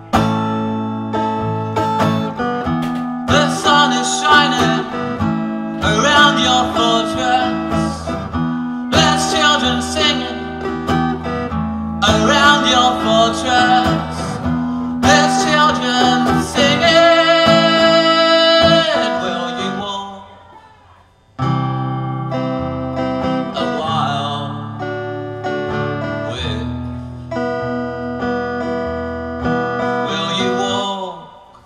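Acoustic guitar strummed in a slow instrumental passage of a live solo song. The playing dies away about twenty seconds in and comes back in suddenly a second later.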